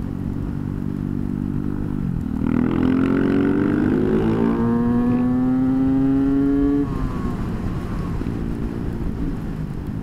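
Supermoto motorcycle engine heard from the rider's own bike, running at a steady cruise, then from about two seconds in pulling hard through one gear with a steadily rising pitch. Near seven seconds the throttle closes and the engine drops back to a lower, quieter run.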